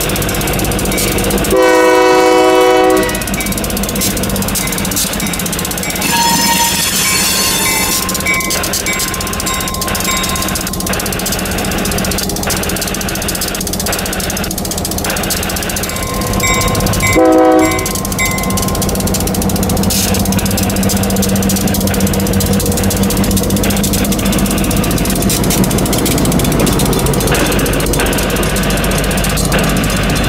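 EMD GP38-2 diesel-electric locomotive moving slowly, its two-stroke engine running with a steady drone. Its air horn sounds one blast about two seconds in and a shorter one a little past the middle. The wheels knock and click over the rails now and then.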